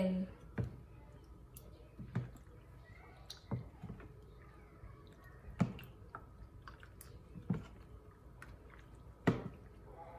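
A wooden spatula and a metal spoon stir a thick, wet mix of cream, condensed milk, shredded coconut and pandan gulaman cubes in a plastic tub. Soft wet stirring is broken by a sharp click or knock of the utensils every second or two, about six louder ones in all.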